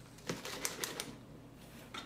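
A plastic bottle being lifted out of a refrigerator door shelf: a quick run of several sharp clicks and knocks in under a second, starting about a third of a second in, with one more click near the end.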